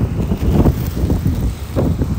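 Wind buffeting the microphone: a loud, irregular low rumble that comes and goes in gusts.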